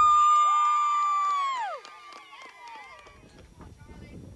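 A long, high-pitched cheering shout on one held note, with a second voice under it, for a softball home run. It holds for about a second and a half and then falls away, leaving quieter scattered voices and faint clatter.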